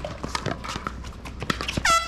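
Pickleball rally: a quick run of sharp paddle-on-ball pops and footfalls on the hard court. Near the end comes a loud, high squeak that drops in pitch and then holds.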